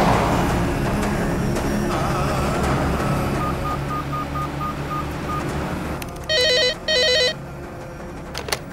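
Desk telephone ringing: one double ring, two short bursts close together, near the end. Before it, a background music score plays, with a row of faint short beeps in the middle.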